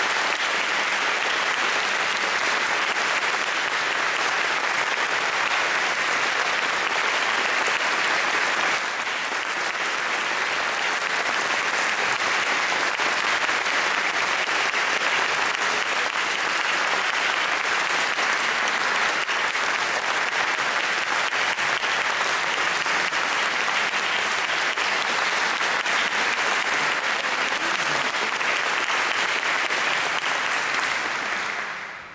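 Audience applauding, a dense, steady clapping that eases slightly about nine seconds in.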